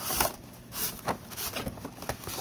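Cardboard scraping and rustling as the inner tray of a model-locomotive box slides out of its sleeve, in a few short scrapes, the loudest right at the start.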